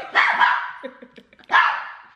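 A girl's loud, breathy bursts of laughter while being tickled: two shrieking laughs about a second and a half apart, with short broken giggles between them.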